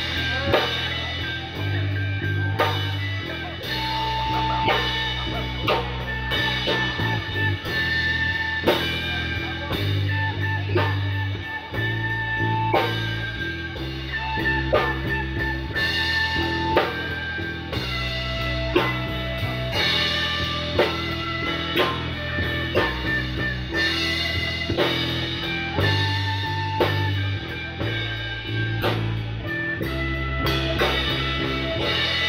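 A live blues trio of electric bass, lead guitar and drum kit playing an instrumental passage with no vocals. Held bass notes and sustained lead-guitar lines run over a steady drum beat.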